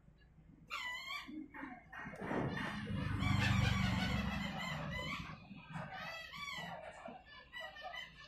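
Chickens clucking and a rooster crowing close by, over the rush of air from a hot air rework station nozzle heating a phone's replacement eMMC chip; the air rush is loudest from about two to five seconds in.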